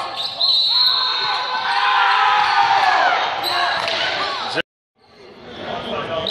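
Pickup basketball game sounds echoing in a large gym: the ball bouncing on the hardwood floor, with players' voices and sneaker noise. The sound cuts out abruptly for about half a second a little past two thirds of the way through.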